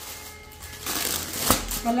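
Clear plastic packaging of a boxed suit rustling as the packet is handled and set down on a table, with a knock about a second and a half in.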